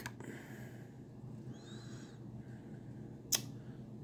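Quiet room tone with a single sharp click a little over three seconds in, from a hand handling a plastic blister-packed die-cast toy car.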